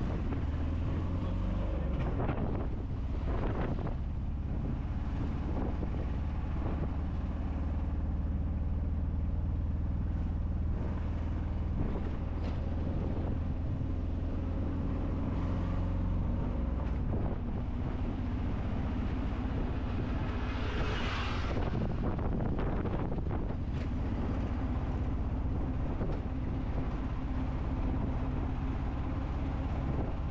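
A tuk tuk's small engine runs steadily as it drives along a city street, with road and wind noise. A brief hiss comes about two-thirds of the way through.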